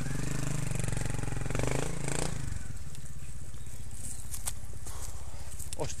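Trials motorcycle engine revving for about two seconds, then running quieter with a steady low pulse, and a few sharp clicks near the end.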